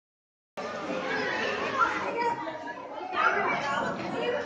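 Indistinct chatter of a group of people talking over one another, starting about half a second in.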